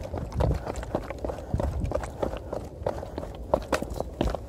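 Quick footsteps of a trail runner on a mountain path, about two to three short impacts a second, slightly uneven, over a low rumble.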